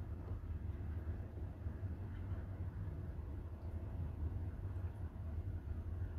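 A steady low rumble in the background, even in level throughout.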